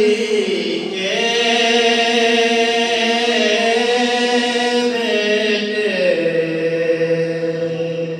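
A young man's unaccompanied voice chanting a manqabat (devotional poem) in Urdu, drawing out long held notes. Each note steps down in pitch, once early on and again about six seconds in.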